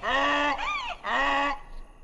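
A cartoon donkey braying: two long level notes with a short rising-and-falling note between them, stopping about one and a half seconds in.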